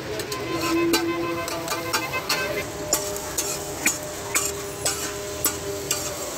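Metal spatulas knocking and scraping on a large flat tawa griddle as tikki fry, with sizzling underneath. In the second half the knocks fall into an even beat of about two a second.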